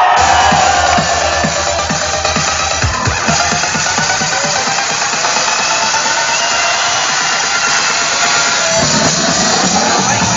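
Electronic dance music from a live DJ set played loud over a PA system. The deep bass thins out after the first few seconds and comes back near the end.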